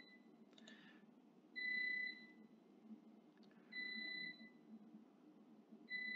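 Faint electronic beeping: a steady high tone about half a second long, sounding three times at roughly two-second intervals, the last near the end.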